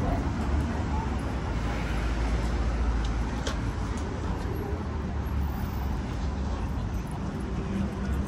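Street ambience dominated by the low rumble of road traffic, swelling as vehicles pass during the first half, with a few faint clicks around the middle.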